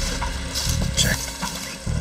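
Footsteps and rustling through dry forest leaf litter, with a few scattered crunches, over a low steady rumble.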